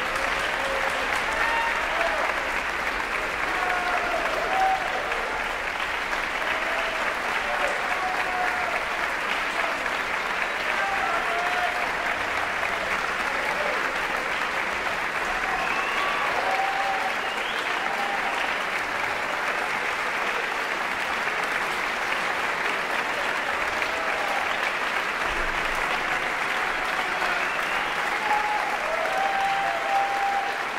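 Concert hall audience applauding steadily, with scattered shouts and cheers through the clapping.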